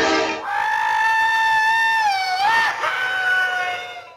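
A man's long whooping yell, held on one high pitch, then wavering and dropping lower about two and a half seconds in before fading out near the end. The tail of mallet-percussion music cuts off in the first half second.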